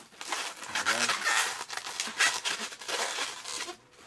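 Latex modeling balloon squeaking and rubbing in the hands as it is twisted and locked into a loop twist, in a run of short squeaks and scrapes. A brief vocal sound comes about a second in.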